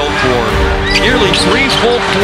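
Live basketball play: sneakers squeaking on the hardwood court in short gliding chirps, with a ball bouncing, under steady music.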